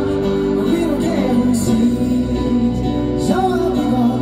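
Live stage piano playing sustained chords, with a male voice singing over it, heard through an arena PA from the audience.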